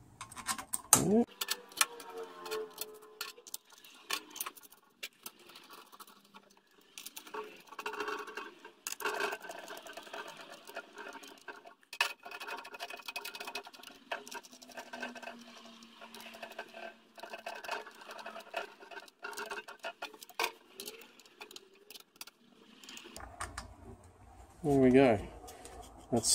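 Small bolts and a hand driver clicking and clinking against the valve body of a ZF 6HP26 transmission's mechatronic unit as the bolts are set in and run down by hand. Many light metal clicks and taps come scattered through the whole stretch.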